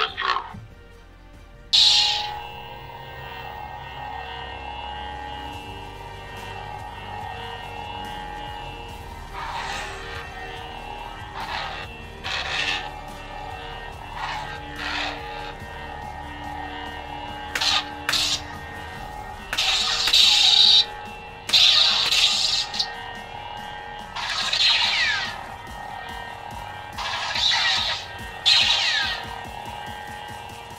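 Electronic hum and swing whooshes from an LGT neopixel lightsaber's sound board on its 'Avenger' sound font, heard over background music. A sharp burst comes at the start and another about two seconds in, then the steady hum carries on under whooshing swings that come louder and more often in the second half.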